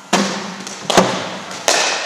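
Three sharp knocks of cricket balls striking bat and hard surfaces in an indoor net, the second the loudest, each followed by a long echo from the hall.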